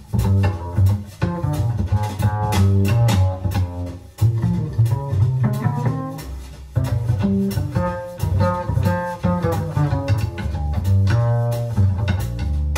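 Jazz duo of hollow-body archtop guitar and grand piano playing a jazz blues, with a bass line moving note by note in the low register under quick plucked and struck notes.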